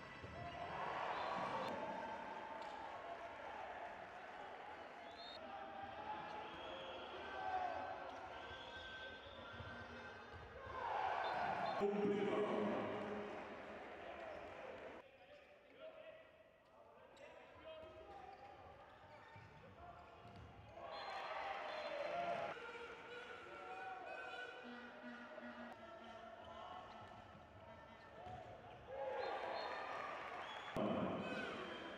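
A handball bouncing on an indoor court amid players' and spectators' voices and shouts in the sports hall.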